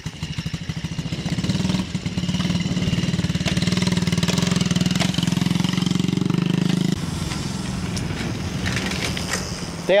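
Mini dirt bike engine pulling away in first gear, running harder and louder for several seconds, then dropping back suddenly about seven seconds in.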